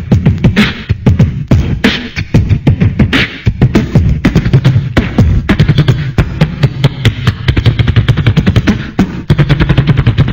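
A person beatboxing: a fast run of mouth-made clicks and snare-like hits over a steady hummed low note.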